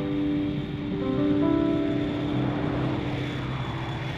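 Soft background music with held notes, under a jet airliner's rushing engine noise as it passes low on its landing approach. The music fades out about halfway through and the jet noise swells, then eases off near the end.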